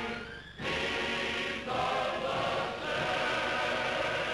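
Film end-title music sung by a choir in held chords that change every second or so. There is a brief dip at the start and a fresh entry about half a second in.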